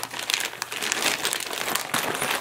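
Clear plastic packaging crinkling as it is handled: the sealed bags holding the tailgate's hinge parts and hardware give an irregular crackle of many small clicks.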